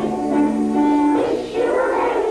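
A children's choir singing a Christmas carol in long held notes.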